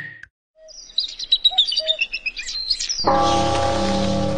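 After a brief silence, small birds chirp and twitter in quick high notes for about two seconds. About three seconds in, music starts with a held chord.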